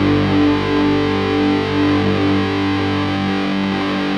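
Instrumental passage of a rock song with distorted electric guitars holding sustained notes, and no vocals.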